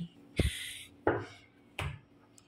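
Tarot cards being handled in a hand shuffle: a sharp card snap with a brief papery rustle about half a second in, then two more sharp snaps, at about a second and near the end.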